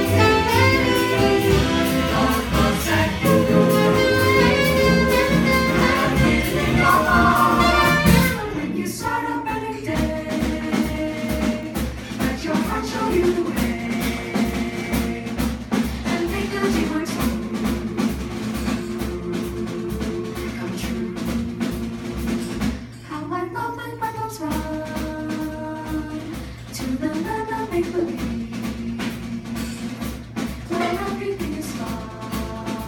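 Vocal jazz ensemble singing with a small jazz band that includes saxophone. A loud, full passage ends about eight seconds in, then the voices hold softer chords over a steady beat.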